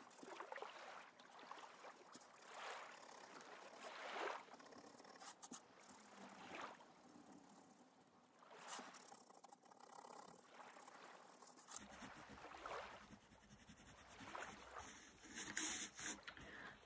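Coloured pencil shading on paper: faint, irregular scratchy strokes, some of them longer swells.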